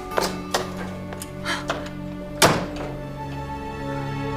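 Background music score: held tones under a series of sharp percussive hits, the loudest about two and a half seconds in.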